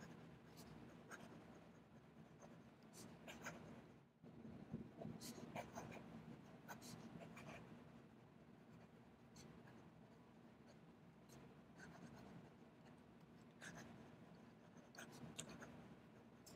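Faint scratching of an extra-fine JoWo #6 fountain pen nib on notebook paper as a line of handwriting is written, in short uneven strokes with occasional light clicks.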